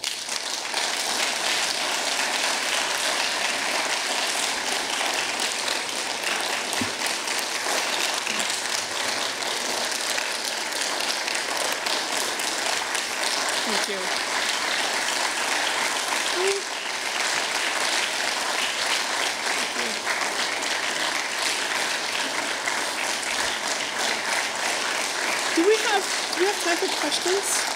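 Audience applauding at length in a large hall, a dense, even clapping that starts all at once and holds a steady level.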